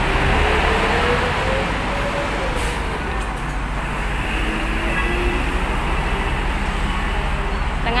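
Steady road-traffic noise from vehicles at a highway bus interchange, with a faint engine whine that slowly rises and falls.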